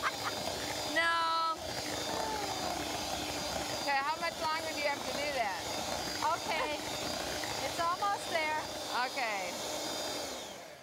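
Electric hand mixer running steadily, its beaters whipping thick cake batter in a glass bowl, with short bursts of women's voices and laughter over it.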